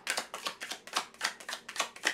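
A deck of tarot cards being shuffled by hand, the cards flicking against each other in a quick, even run of clicks, about six a second.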